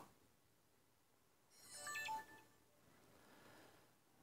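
A short, faint electronic chime from a smartphone, a few stepped tones about two seconds in; otherwise near silence.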